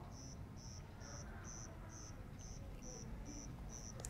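A cricket chirping steadily and faintly, about two short, high chirps a second.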